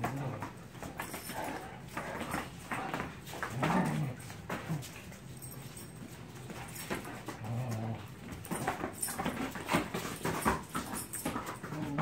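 Dogs play-fighting: short low growls a few times, with scuffling and clicking from paws on the floor.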